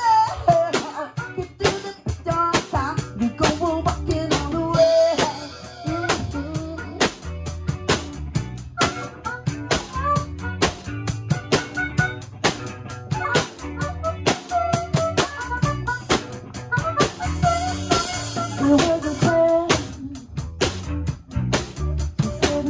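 A live rock band playing: a drum kit keeps a steady beat under bass guitar and electric guitar, with a vocalist singing into a microphone.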